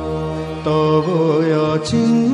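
Bengali devotional song playing: a long held sung note over a steady drone, then a new phrase starts about a third of the way in with gliding vocal ornaments.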